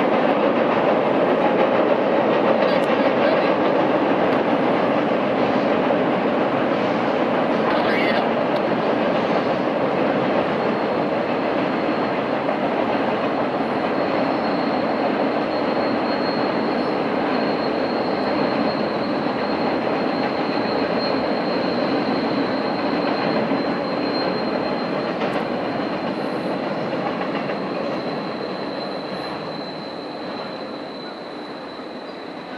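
Intermodal freight cars rolling across a steel truss trestle, a steady rumble and clatter. From about halfway through, a thin, high, steady wheel squeal joins in, and the whole sound fades toward the end as the last cars clear the bridge.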